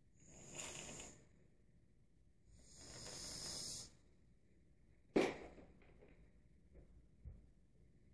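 Two long, hard blows of air through the cut-out coolant tube of a water-cooled TIG torch hose, forcing the leftover cooling water out. This is followed by a single sharp knock and a few small ticks.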